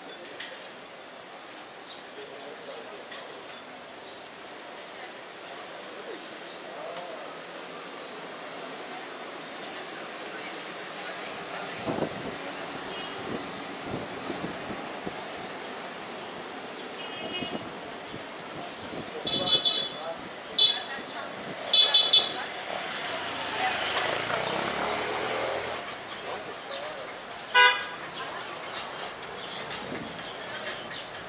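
Busy street ambience with passers-by talking, broken by a vehicle horn tooting: a few short blasts in quick succession about two-thirds of the way through and one more near the end. A vehicle passes between the toots.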